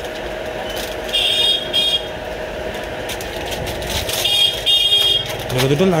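Road traffic with three short runs of rapid high-pitched vehicle-horn beeps, about a second in and twice near the end, over a steady tone.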